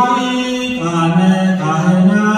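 Ethiopian Orthodox liturgical chant sung by male clergy in slow, long-held notes. About halfway through, the melody drops to a lower note.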